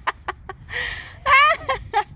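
A person laughing: a run of short, quick bursts, a breathy rush, then a high rising squeal near the end.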